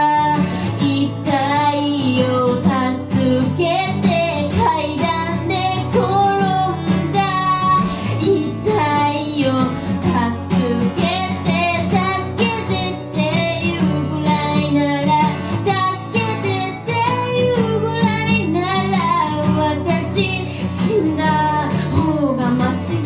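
A high solo voice singing over a strummed acoustic guitar, a live vocal-and-guitar performance, with held notes that waver in vibrato.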